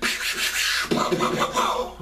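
A man making gun and explosion sound effects with his mouth, beatbox-style. It starts with a long hissing rush, and more pitched mouth sounds follow in the second half.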